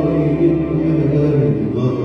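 Live concert music: a male singer holds a long, steady note over band accompaniment.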